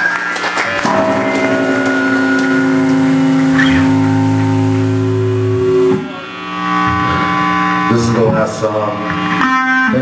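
Live rock band with electric guitar playing long, held droning notes through amplifiers. The sound dips briefly about six seconds in, then the held tones resume.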